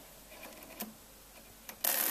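Key mechanism of a Comptometer mechanical calculator: a few faint clicks, then near the end a loud, brief metallic clatter as the 1 key is worked and the carry runs through every column of nines on the register.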